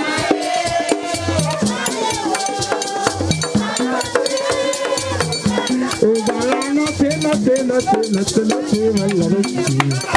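Haitian Vodou ceremonial music: tall wooden hand drums beaten in a dense, driving rhythm under group singing.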